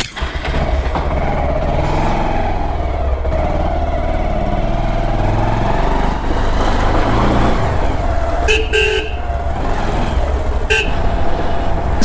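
Motorcycle riding in road traffic: steady engine and road noise. Short horn beeps come about two-thirds of the way in, two close together, then one more about two seconds later.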